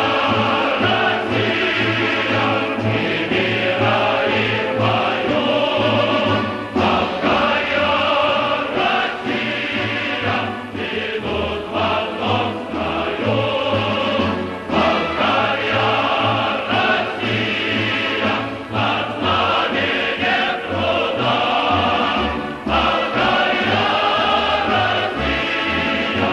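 Choral music: a choir singing with instrumental accompaniment.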